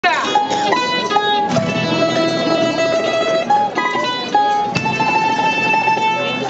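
Spanish folk string band playing: several acoustic guitars strumming chords under a mandolin-type instrument carrying a melody of held notes that change pitch every second or so.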